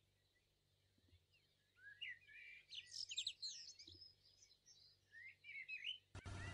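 Near silence with faint bird chirps, a few short twitters starting about two seconds in and again near the end.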